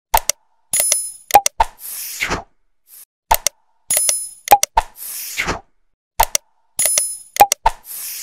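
Animated subscribe-button sound effects: sharp mouse clicks, a bright bell-like ding and a short whoosh. The sequence plays three times, about every three seconds.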